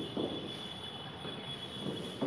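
Chalk and a felt duster working on a classroom blackboard: a series of short, soft scraping strokes a few tenths of a second apart.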